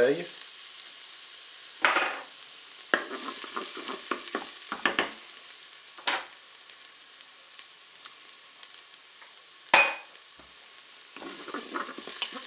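Minced garlic sizzling in hot oil in the non-stick bowl of a Moulinex Cookeo multicooker on its browning setting: a steady frying hiss that starts as the garlic goes in, broken by a few sharp clicks and pops, the loudest about ten seconds in.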